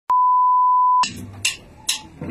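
A steady electronic beep, one pure tone lasting about a second that cuts off sharply, followed by two short faint clicks about half a second apart.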